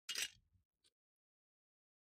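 A short metallic scrape of hand tools being picked up off a small metal parts tray, followed by two faint ticks.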